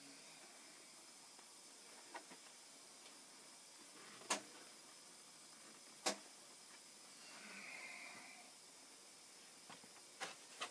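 Quiet room tone broken by gloved hands handling a heat-softened PVC pipe while it cools into shape: two sharp clicks about four and six seconds in, and a soft rub near eight seconds.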